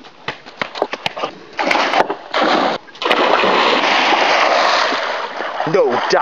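A few sharp slaps, then a person plunging into an outdoor swimming pool with a loud splash, followed by a few seconds of heavy splashing and churning water.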